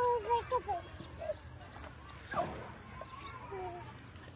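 Young children's high-pitched voices calling and squealing in short cries, most of them in the first second, with a brief rush of noise about halfway through.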